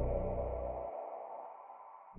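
The end of a future garage track fading out. Sustained synth tones die away, and the deep bass cuts off about halfway through.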